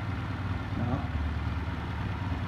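Honda Custom CM125 motorcycle's small air-cooled parallel-twin engine idling steadily.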